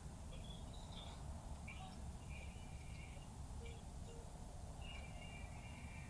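Faint, high, thin bird-like chirps and whistled calls, a couple of them held for about a second, over a steady low outdoor rumble.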